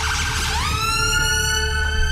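Emergency ambulance siren wailing: one pitched tone that sweeps up steeply about half a second in, then holds high and keeps creeping upward, over a steady low hum.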